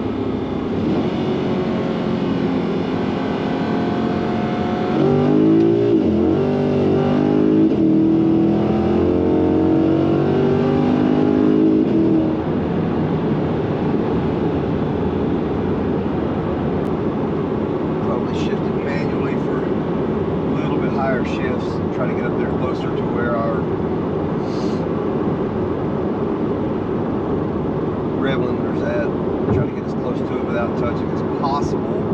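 Chevrolet C8 Corvette's LT2 V8 with ported heads and an aftermarket cam, heard from inside the cabin. From about five seconds in, the engine note climbs in pitch under hard acceleration and is at its loudest for about seven seconds. It then settles back to a steady cruising drone.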